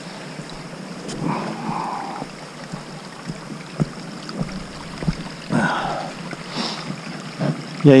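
Footsteps on loose trail rock over a steady rushing noise, with a few sharp clicks of stones knocking together around the middle.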